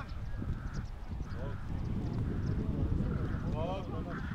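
Shouts from players and spectators at a youth football match, with a few raised voices near the end, over a steady low rumble.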